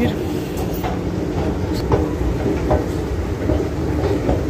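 Moving escalator running, a steady mechanical rumble with faint intermittent clicks as the steps travel up.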